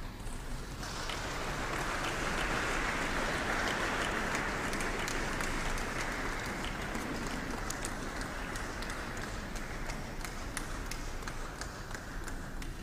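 Audience applauding, a dense patter of many hands clapping. It starts about a second in and eases slightly near the end.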